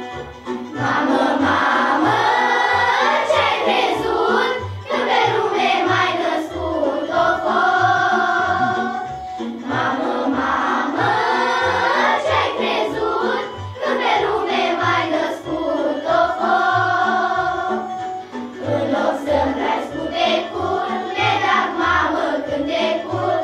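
A children's choir of girls singing a song in unison over an instrumental backing with a steady bass beat, in phrases with short pauses every four or five seconds.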